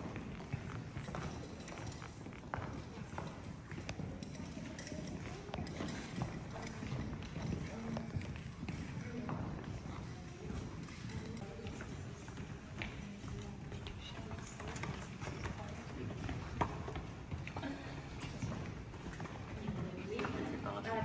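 Footsteps of several people on a wooden parquet floor, irregular hard knocks of shoes, over the indistinct murmur of visitors' voices.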